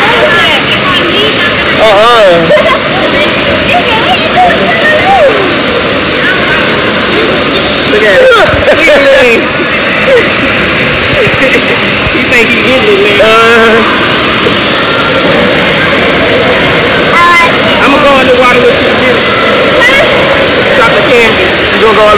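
Steady rush of running and splashing water in a waterpark pool, with voices calling and shouting over it now and then.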